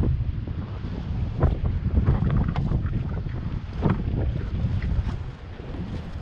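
Wind buffeting the microphone in a low, steady rumble, with a few short knocks of footsteps on wooden boardwalk steps.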